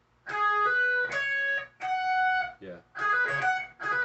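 Schecter electric guitar playing a lead phrase of single picked notes, starting about a quarter second in, several notes held for around half a second, with a short break near the middle before the run carries on.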